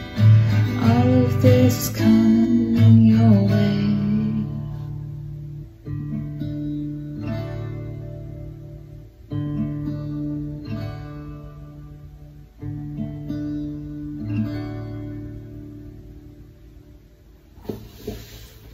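Acoustic guitar ending a song: a sung voice trails off over the strumming in the first few seconds, then a few slow strummed chords each ring out and fade away, the playing growing quieter toward a brief thud near the end.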